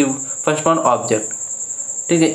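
A man's voice speaks briefly in the first second, then pauses. A steady high-pitched trill runs unbroken underneath.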